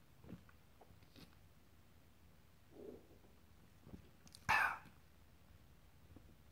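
A person taking a sip of beer: a few faint clicks and a soft swallow, then, about four and a half seconds in, one short, loud burst of breath.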